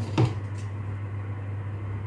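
A steady low hum, with one brief knock a moment after the start.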